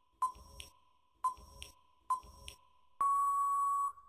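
Quiz countdown timer sound effect: three short pings about a second apart, each fading away, then a louder steady beep held for about a second as the timer runs out.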